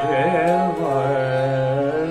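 A male Hindustani classical vocalist sings a gliding, ornamented phrase in raga Chandrakauns over a steady drone.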